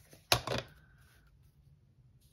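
One sharp plastic click as a stamp ink pad is handled and put away, followed by a short rustle. The rest is quiet room tone.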